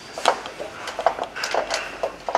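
Light, irregular metal clicks and taps, about half a dozen, from hands handling the loosened bearing units and split drive shaft of an overhead conveyor drive.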